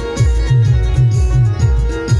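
Instrumental Timli dance music played on electronic keyboards, with a heavy, evenly repeating low beat under a sustained keyboard melody line.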